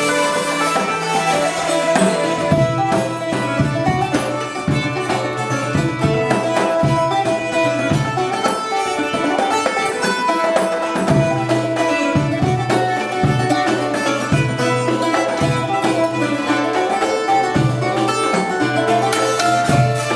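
Live folk ensemble playing a tune on hurdy-gurdy, cittern and nyckelharpa with hand drums: steady drones hold under the bowed and cranked melody while the cittern is strummed and the drums keep a regular beat.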